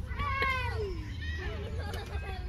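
A young child's high-pitched squealing call, its pitch arching up and then falling away, lasting most of the first second, followed by quieter child vocal sounds.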